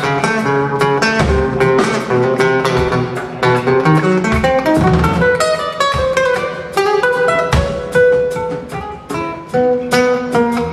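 Acoustic guitar played live as a solo, a quick succession of plucked notes and chords.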